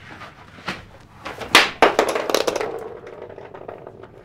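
A few sharp knocks and clatters, the loudest about a second and a half in, followed by a quick run of lighter taps and a faint fading hum.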